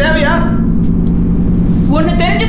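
Steady low engine drone heard inside a military transport's passenger compartment, with a voice speaking briefly at the start and again near the end.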